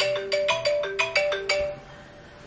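Mobile phone ringing with a marimba-style ringtone: a quick run of bright plucked notes hopping between a few pitches, which stops just before the end and starts over after a short pause.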